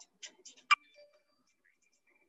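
A few light clicks, then one sharp, louder click about three-quarters of a second in.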